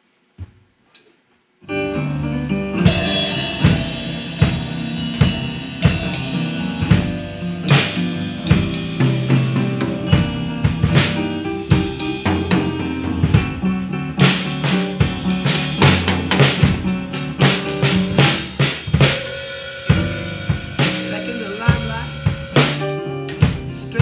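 A couple of faint clicks, then about two seconds in a recorded band track starts with an acoustic drum kit played live along to it: steady snare and bass drum hits and cymbal crashes over the song.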